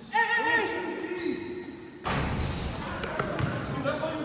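Basketball bouncing on a hard indoor gym court during a game, with a few short sharp bounces in the second half. Players' voices and shouts carry through the large gym hall.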